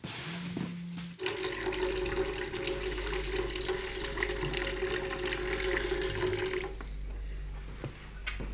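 Tap water running into a sink. It starts about a second in, runs steadily for about five and a half seconds, and stops near the end.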